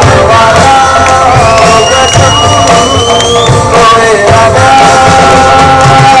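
Live band playing loud amplified music through PA speakers, with electric and acoustic guitars, bass and drums, and a voice singing. A long high tone slowly rises through the middle of the passage.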